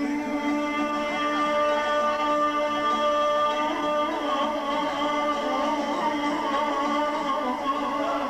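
A man singing into a hand-held microphone, amplified. A long steady held tone fills the first half, then the line turns wavering and ornamented from about halfway.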